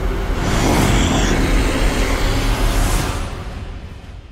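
Trailer sound-design rumble: a loud, deep rumble with a rushing hiss over it, building over the first second and then dying away near the end.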